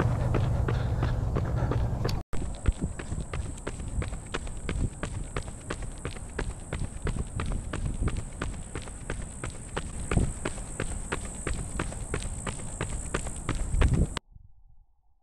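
Running footsteps of Nike Vaporfly Next% 2 racing shoes striking a concrete sidewalk, a steady beat of about three footfalls a second. For the first two seconds the steps are half-buried under wind rumble on the microphone.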